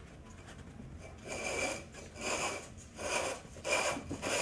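Hands spreading buttered molasses-cookie crumbs across the bottom of a metal springform pan, heard as four short rubbing strokes about a second apart that start about a second in.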